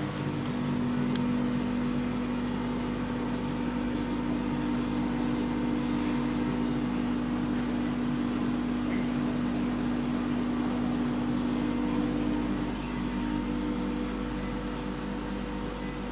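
A steady mechanical hum made of several fixed low tones. About 13 s in, one of its tones cuts out and it becomes a little quieter.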